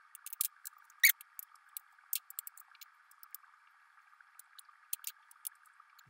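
Light, irregular clinks of metal spoons against small glass cups and against each other, about a dozen in all with the sharpest about a second in, as foam and grounds are skimmed off the top of cupped coffee. A faint steady hiss lies underneath.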